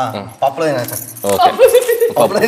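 People talking, with crisp rustling and light jingling as dry corn husks are peeled off the cobs by hand.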